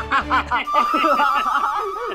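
Several men laughing and chuckling in short bursts, with a single high steady note held for over a second behind them.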